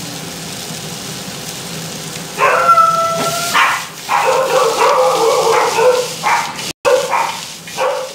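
Meat and vegetables sizzling steadily in a hot frying pan. From about two and a half seconds in, loud drawn-out whining calls from a dog come in several bouts and cover the sizzle.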